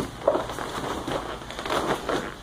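Grappling noise: jiu-jitsu gi cloth rustling and bodies scuffing and shifting on vinyl mats, with a sharp louder bump about a quarter second in.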